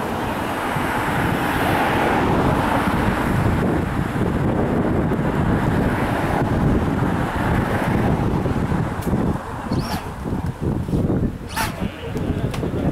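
Steady wind buffeting the microphone, turning gustier and choppier near the end, with a couple of short clicks.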